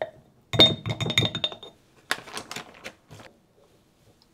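A wooden spoon clinking and scraping against a small glass jar as thick rice koji paste is pushed in from a bag: a quick run of small clinks with a faint glassy ring about half a second in, then a second, rougher run of clicks and scraping.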